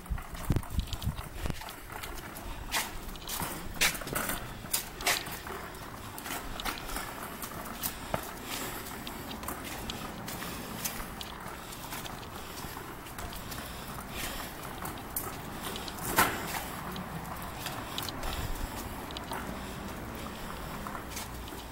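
Loaded wheeled cart rolling over concrete pavement, its wheels and frame giving off irregular clicks and knocks, with footsteps; one louder knock comes about three quarters of the way through.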